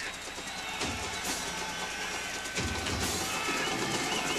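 Stadium crowd noise with music playing in the stands.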